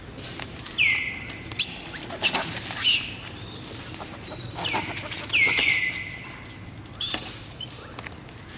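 Short high-pitched animal calls, each sliding down and then held briefly, repeated four times, with a quick rising squeak and smaller chirps in between.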